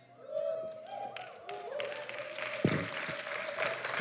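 Congregation applauding, the clapping starting about half a second in and carrying on, with a few voices cheering over it.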